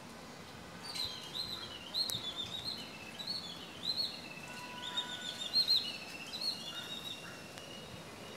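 A songbird singing a quick, varied run of short, high chirping notes. The song starts about a second in and lasts several seconds, over a faint steady background hiss.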